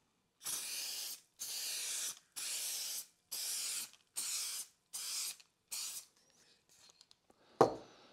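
Aerosol spray can of red-orange paint sprayed in seven short hissing bursts, the last few shorter, laying the base coat for a crackle finish.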